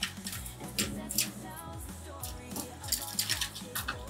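Background music with a steady bass line, over several sharp plastic clicks and crackles as a thin PLA brim is peeled off a 3D-printed part.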